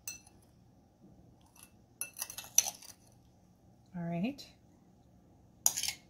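Metal spoon clinking and scraping against a ceramic bowl as diced strawberries are spooned out, with a cluster of sharp clinks about two seconds in and another near the end. A brief hum is heard around four seconds in.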